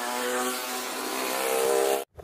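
Street traffic with motorcycle engines running as the bikes ride past, over a loud, steady hiss of road noise. It cuts off suddenly at the end.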